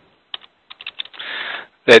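Scattered keystrokes on a computer keyboard heard over a telephone line, a few separate clicks followed by a short soft hiss, as the agent enters the caller's name.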